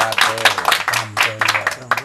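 Audience applause, many hands clapping, over music; the clapping thins out near the end.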